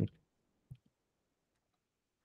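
Near silence, broken by a single faint click about 0.7 s in.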